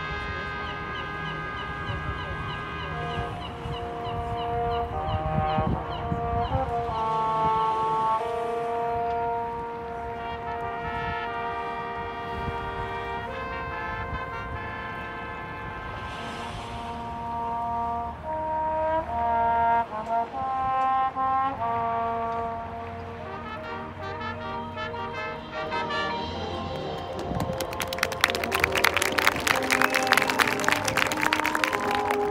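A high school marching band playing its field show: the brass hold slow, shifting chords over low drums. The music swells louder and busier near the end.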